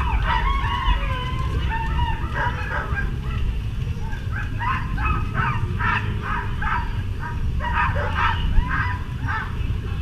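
A pack of harnessed sled dogs barking and yelping, eager to run before a race start: a dense chorus of high, rapid yips that thickens in the second half, over low background noise.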